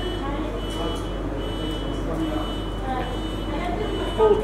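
Background chatter of other people's voices over a steady low hum, with a thin high tone that comes and goes; the wire being threaded makes no clear sound of its own.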